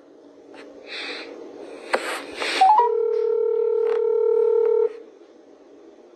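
Electronic telephone tone on a call line: a quick rising run of three short beeps, then a steady tone of several notes held for about two seconds that cuts off suddenly. A sharp click comes shortly before it.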